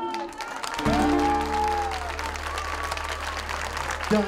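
Audience applauding at the end of a live bolero performance. About a second in, a held pitched tone sounds over the clapping for just over a second, and a steady low hum comes in at the same moment.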